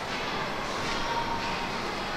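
Steady background noise of a large indoor shopping-mall hall, an even hum and hiss without distinct events.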